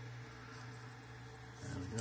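Steady low hum from the powered-up Creality CR-10S 3D printer sitting idle, its fans running. A man's voice starts a word near the end.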